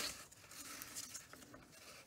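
Faint rustle and light ticks of a torn strip of paper being handled and laid on a sketchbook page, over a faint low hum.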